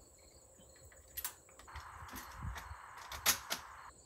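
Light metallic clicks of a lever-action rifle being handled and loaded with .357 Magnum cartridges. A few faint clicks come about a second in and two sharper clicks a little after three seconds.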